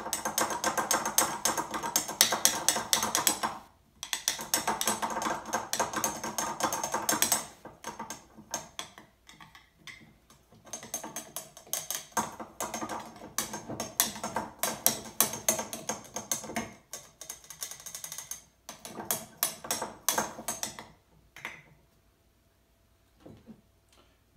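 Long-handled metal spoon stirring herbs in liquid in a glass jar: rapid clinking and scraping of metal against glass, with a ringing note. It goes in stretches with short pauses and stops about 21 seconds in.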